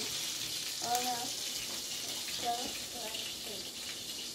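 A frying pan sizzling on an electric stove, a steady high hiss, with faint voices briefly over it.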